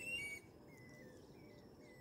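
Faint birdsong: a brighter call in the first half-second, then short high chirps, each falling in pitch, about every half second, over a low steady hiss.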